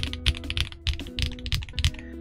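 Typing on a stock TG67 V3 keyboard with Kinetic Labs Latte linear switches and thick Black on Chalk PBT keycaps: a quick, even run of keystrokes, several a second. The keys pop, with a softer, deeper tone.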